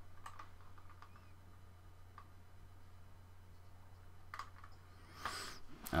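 A few faint, scattered clicks from working a computer mouse and keyboard, over a low steady electrical hum, with a breath just before the end.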